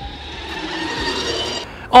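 BMW CE 04 electric scooter passing: a faint electric-motor whine over tyre noise, growing louder as it approaches, then cutting off abruptly shortly before the end.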